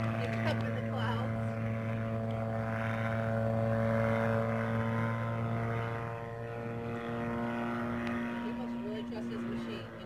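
One-man gyrocopter's engine and pusher propeller droning as it flies overhead, a steady pitched hum that dips slightly in loudness about six seconds in.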